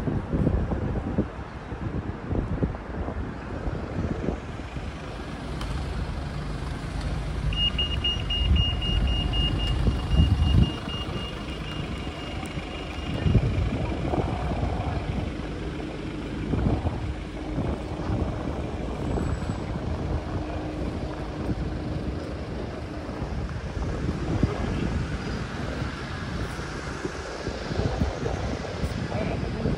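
City street ambience: road traffic running past, with a rapid high-pitched beeping at one steady pitch for about six seconds in the middle.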